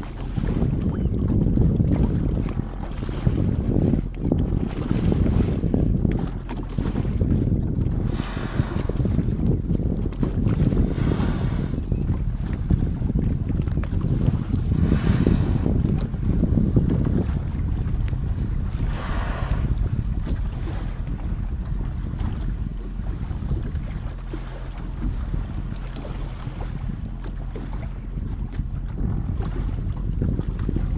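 Wind buffeting the microphone over a boat's motor running low and steady on open water, with about five brief hissing rushes of noise in the first two-thirds.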